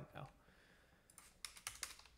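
Faint computer keyboard typing: a quick run of about half a dozen keystrokes in the second half, after a near-silent pause.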